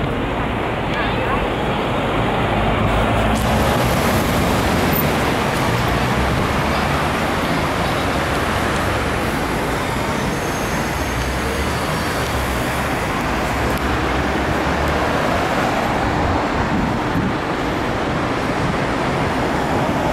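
Steady city road traffic: cars and buses running through a busy intersection.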